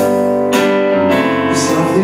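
Live keyboard music: a synthesizer keyboard plays sustained chords, with a new chord struck about half a second in.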